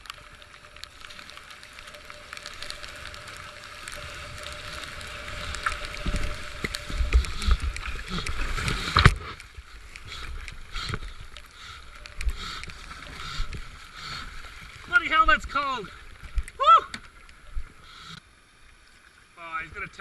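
Kayak running a rapid: rushing white water and splashing against the hull close to the microphone, building over the first nine seconds with low thumps, then cutting off abruptly. After that comes quieter flowing water with scattered paddle splashes and a couple of short vocal sounds.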